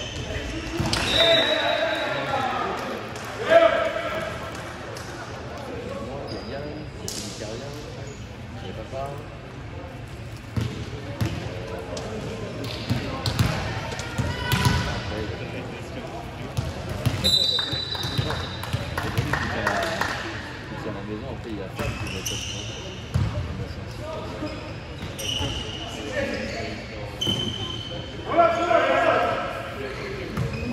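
Indoor volleyball play echoing in a sports hall: the ball struck and hitting the floor, with the sharpest hit about three and a half seconds in. Short high squeaks and players' shouts are heard among the hits.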